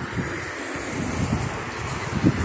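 A steady rush of street noise beside a road, with wind buffeting the microphone in irregular low rumbles.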